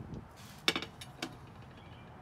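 A single sharp clink about two-thirds of a second in, followed by a fainter knock a little after a second.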